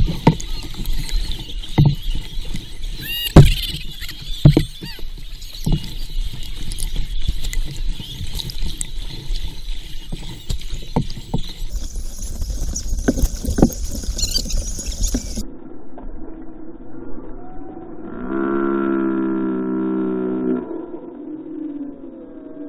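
Water sloshing and splashing close around a small paddle boat as a wooden paddle is worked, with sharp knocks of the paddle against the hull. The water noise cuts off suddenly after about 15 seconds, and a little later a held low note with several overtones sounds for about two seconds.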